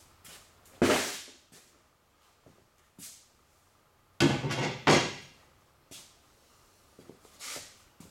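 Metal engine parts being handled and set down, giving a few loud clanks: one about a second in and two close together around four to five seconds in, with fainter knocks between.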